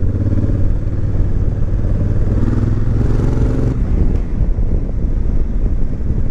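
2019 Honda Africa Twin DCT's parallel-twin engine pulling steadily in fifth gear, running a bit lumpy, which is to be expected for a twin. About four seconds in, the engine note drops back under the rumble of the ride.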